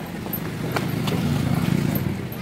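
A motorcycle engine running close by with a low, pulsing rumble that grows louder, with a couple of sharp clicks about a second in.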